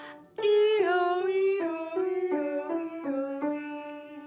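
A woman singing a vocal range exercise, alternating 'ee' and 'oh' vowels on a quick run of about nine notes that zigzags gradually lower. It starts just after a short pause.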